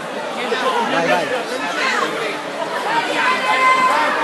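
Crowd chatter: many overlapping voices of spectators talking and calling out in a large hall, getting a little louder near the end.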